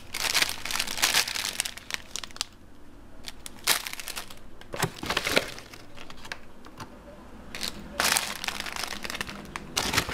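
Plastic food packaging crinkling and rustling in irregular bursts as ingredient packets and bags are handled, with quieter gaps between.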